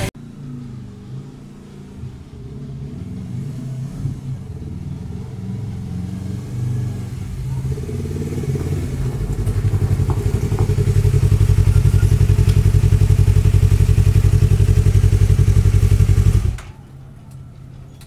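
Yamaha sportbike engine running as the bike rides up and comes to a stop close by, growing louder, then idling steadily. About 16 seconds in the engine is switched off and the sound stops abruptly.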